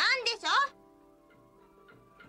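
A high voice speaks a short line of dialogue, then faint background music with held notes carries on.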